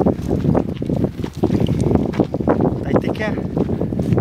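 Mostly a man's speech, with wind noise on the microphone.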